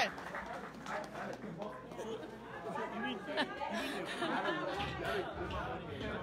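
Indistinct chatter of several people talking at once in a room, with a low rumble near the end.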